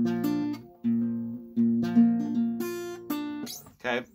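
Acoustic guitar with a capo on the first fret, an A chord shape picked one string at a time in a slow arpeggio, about half a dozen notes ringing over one another.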